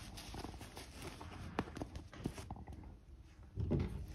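Faint handling noise: cloth and feathers rustling under the hands, with a few small clicks and knocks on a wooden bench.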